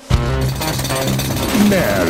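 Produced title-sequence sound effects over music: a loud, rapid pounding rattle that starts suddenly, with a pitched sound gliding down near the end.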